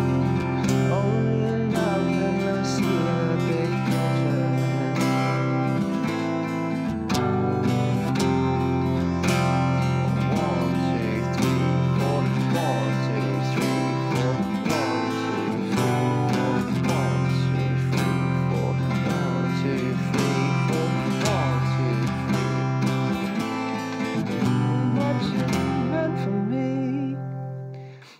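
Acoustic guitar strummed in a steady rhythmic pattern of down, up-up-down, down, down, down-up. The chords cycle through Fsus, C, A minor and G, with the bass note changing every few seconds.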